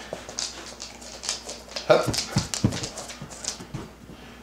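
A Catahoula Leopard Dog scrambling up onto a cloth-covered couch on command, with scuffing and light knocks throughout and a couple of short whines about halfway through.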